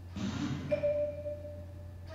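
Live improvised percussion: a short noisy rattle just after the start, then one ringing pitched note that sustains for most of a second, over a steady low hum.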